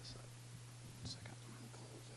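Faint, indistinct murmured voices off-microphone over a steady low hum.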